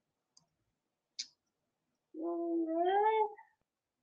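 A brief click, then about a second later one drawn-out pitched vocal sound that rises in pitch near its end.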